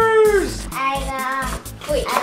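A child's drawn-out high exclamation that trails off about half a second in, followed by a second shorter child's vocal, over background music.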